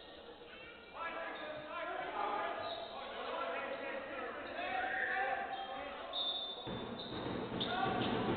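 Basketball bouncing on a hardwood court amid players' voices in a sports hall, with a short high whistle tone about six seconds in.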